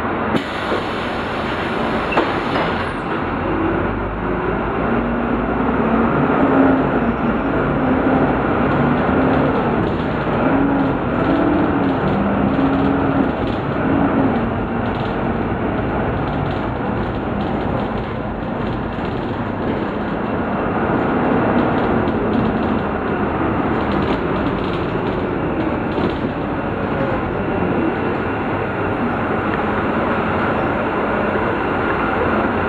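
Volvo B9 Salf articulated bus under way, heard from inside the passenger cabin: a steady drone of diesel engine and road noise. Through the first half an engine or driveline note rises and falls in pitch as the bus changes speed, then settles.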